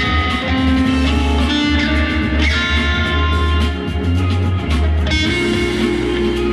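Electric guitar played through an amplifier: held lead notes with some pitch bends, over a steady deep bass underneath.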